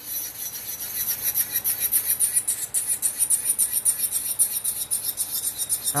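Electric nail drill (e-file) running at speed, its bit grinding against an acrylic nail to shape it: a high-pitched whine with a fast, even pulsing as the bit works over the nail.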